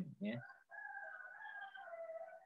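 After the last syllable of a man's voice, a faint drawn-out pitched call holds fairly steady for nearly two seconds and drops lower at the end.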